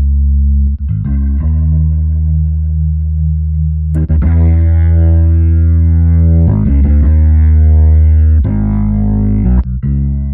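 Electric bass guitar loop playing sustained low notes through a Leslie-style rotary speaker plugin, the note changing every second or two. There are a few brief drops in level as presets are switched.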